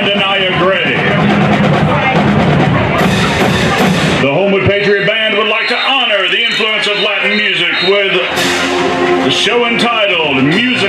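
High school marching band playing: brass and woodwinds carry a moving melody over drumline hits. A bright crash comes about three seconds in and another about eight seconds in.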